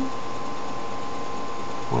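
Steady background hiss with a thin, constant electrical whine, unchanging throughout.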